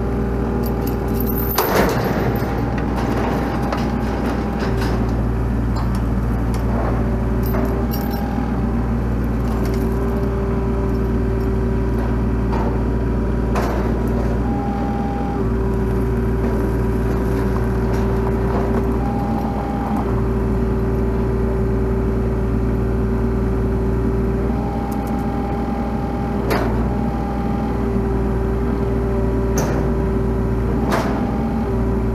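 Mini excavator's diesel engine running steadily, with a hydraulic whine that cuts in and out in stretches of a few seconds as the boom lifts and tips a steel trailer hanging from a chain. A few sharp metallic clanks, the loudest about two seconds in.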